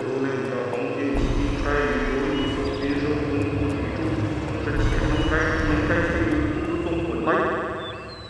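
A man chanting a spell in a quavering, wavering voice, in phrases broken by short pauses. It falls away near the end.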